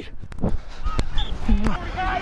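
Thuds and rustle from a body-worn microphone on a jogging footballer, with irregular knocks from his footfalls on turf. A short distant call is heard about one and a half seconds in.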